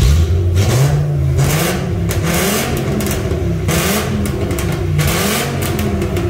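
Volkswagen Golf IV's five-cylinder V5 engine being revved in a series of blips, its pitch rising and falling several times. It runs through an exhaust with one of its silencers removed: still quiet, but with some five-cylinder character audible.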